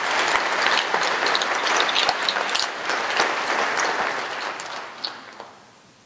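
Audience applause, a dense patter of many hands clapping that fades away over the last two seconds.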